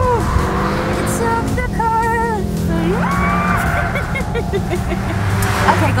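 Remix music with a steady bass line and short, chopped, pitched vocal-like samples, one gliding up about three seconds in, over car engine and road noise.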